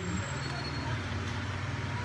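Steady low rumble with a light hiss of background noise, unchanging throughout.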